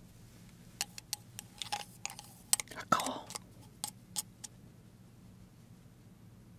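A run of short, sharp clicks and taps from about a second in to about four and a half seconds, with a brief noisier rustle near the middle. A small glass jar of edible gold flakes is being handled, tapped and shaken with chopsticks as gold leaf is sprinkled onto fried chicken, picked up close by ASMR microphones.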